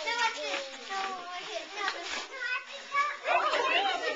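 Several young children's voices talking and calling out over one another, in a busy overlapping chatter.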